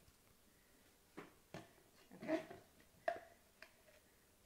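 Mostly quiet, with a few faint clicks and taps of a table knife and bread slices being handled on a countertop.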